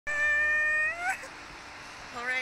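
A high-pitched vocal whine or held 'ooo' from a rider, steady for most of a second, then rising in pitch and breaking off; only faint background follows.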